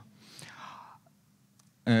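A man drawing a short breath at the microphone in a pause between sentences, then about a second of near silence before he says 'uh'.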